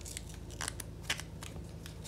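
Crisp rustling and crinkling from a shoe insole being handled, fingers rubbing at the label sticker on it: about half a dozen short, irregular scratches over a faint steady hum.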